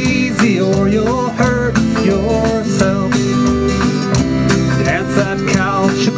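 Live country-rock band playing an instrumental passage: a fiddle melody with sliding notes over strummed acoustic guitar, electric guitar, bass and drum kit.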